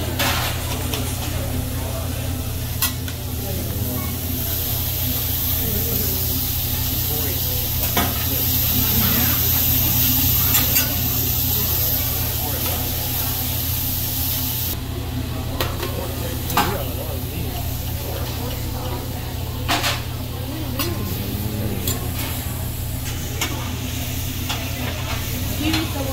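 Shrimp and noodles sizzling on a hot steel hibachi griddle, a steady hiss that grows louder for several seconds in the first half and then eases off. A few sharp clicks stand out over it.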